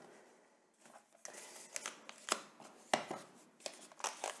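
Faint rustling and scraping of small cardboard pen boxes being handled and slid on burlap, starting about a second in, with two light taps or clicks as a box is set down.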